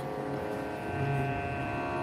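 Steady sustained musical drone holding on after the sung hymn has stopped, with a brief low hum about a second in.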